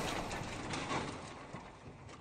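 The fading tail of a crash sound effect, with scattered clicks and clatters as of many blocks tumbling into a pile, dying away.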